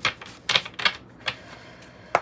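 Tarot cards being handled in the hands: four sharp card snaps about a third to half a second apart in the first second or so, following a shuffle.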